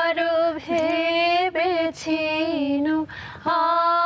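A woman singing a slow melody solo, with no instruments behind her, holding long notes that bend gently in pitch. She draws a breath about three seconds in before the next phrase.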